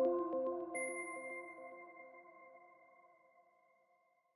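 Short electronic logo jingle: a chord of quickly repeated notes echoing and dying away, with a high ping tone coming in under a second in, the whole fading out by about three seconds in.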